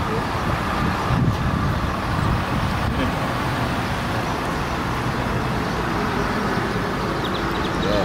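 Steady road traffic noise, a continuous mix of passing cars with no single event standing out.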